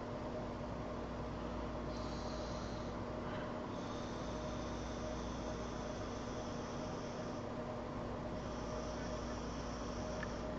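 Hiss of air being drawn through an Aqua 2 dual-microcoil rebuildable tank atomizer built at about 0.4 ohms as its coils fire. There is a short pull about two seconds in, a longer pull of three to four seconds starting about four seconds in, and another near the end. A steady low hum runs underneath.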